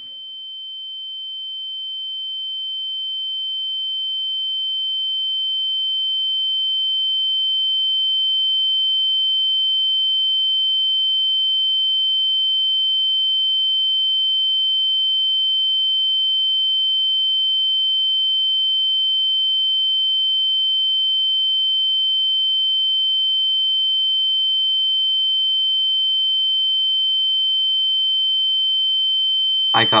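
A single pure, high-pitched electronic tone, like a ringing in the ears. It swells louder over the first several seconds, then holds steady.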